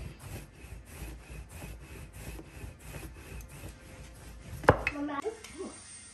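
Wooden rolling pin rolling back and forth over yeast dough on a floured countertop: a soft, even rubbing at about three strokes a second. Near the end the strokes stop, followed by a single sharp knock.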